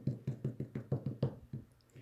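Small plastic ink pad tapped repeatedly onto a clear stamp on an acrylic block, about six quick knocks a second, stopping shortly before the end. The pad is pressed hard because it is a little dry.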